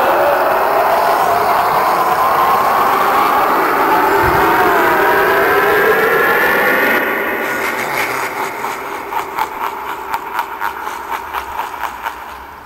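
Harvester of Souls animatronic playing its soul-sucking sound effect. A loud rushing whoosh with ghostly wavering tones that slide upward runs for about seven seconds. It then turns into a fast, uneven fluttering rattle that fades away near the end.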